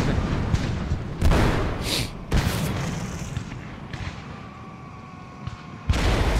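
Artillery fire in a film soundtrack: heavy booms with a deep rolling rumble, three sharp blasts in the first two and a half seconds, then the rumble fading away.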